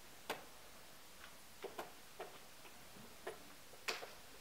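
Wooden chess pieces set down on a board and a chess clock's button pressed during a blitz game: about six short, sharp clicks and knocks, the loudest about a third of a second in and another just before the end.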